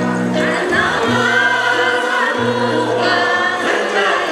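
Women's choir singing a traditional Paiwan ancient song (guyao) in long, held notes.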